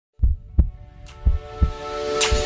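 Intro music opening with a deep heartbeat-like double thump, heard twice, over steady held tones. A brief whoosh comes between the two heartbeats.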